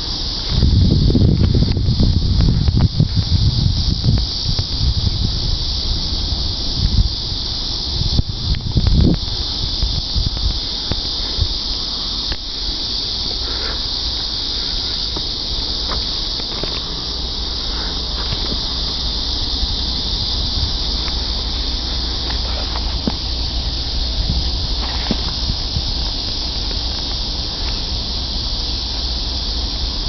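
Steady high-pitched insect chorus from the trackside brush, with gusts of wind buffeting the microphone in the first few seconds and again around eight seconds in.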